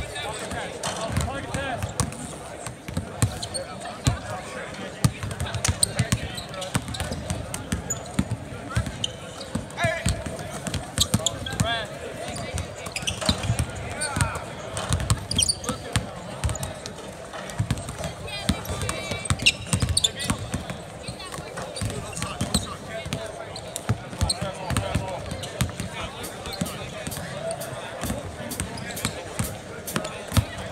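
Several basketballs bouncing on a hardwood court during a shooting drill: frequent, irregular thuds that overlap one another, with players' and coaches' voices in the background.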